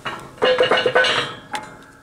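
Steel parts of the pipe roller's bottom frame clinking and clanking against the steel bed of the hydraulic press as the frame is settled in place. The strokes come in a quick cluster with a short metallic ring about half a second in, then fade.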